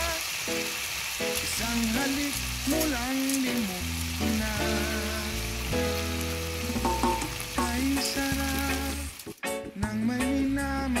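Beef strips sizzling steadily in hot oil in a wok, with a background song and its bass line playing over the frying. The sound drops out briefly about nine seconds in.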